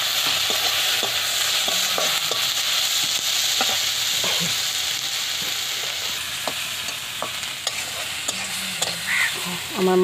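Sliced onions and green chillies frying in oil in an iron wok, a steady sizzle with a metal spatula scraping and tapping against the pan as they are stirred. The sizzle eases off slightly in the second half.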